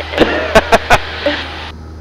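A woman laughing briefly in short bursts over the aircraft intercom, above the steady low drone of the Cessna 172's engine.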